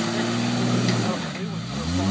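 Jeep Cherokee's engine revving hard under load as it climbs a rocky creek-bed ledge. It is held high, eases off briefly past the middle, then rises again at the end.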